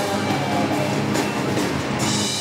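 Live band playing rock music: strummed acoustic guitar with a drum kit and electric bass.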